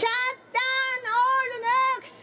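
A woman's high voice singing four held notes, close and loud, with short breaks between them.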